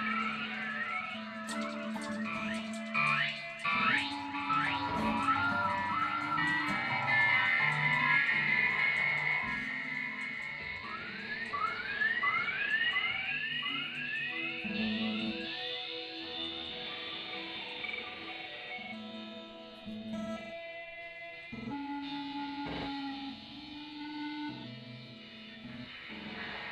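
Electric guitar played through effects pedals in a free improvisation: bursts of rising, swooping pitch glides over sustained low notes, then sparser single notes as it grows quieter in the second half.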